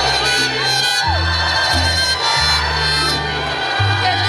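Mariachi band playing live: a section of violins holding sustained lines over guitarrón bass notes, with the audience cheering over the music.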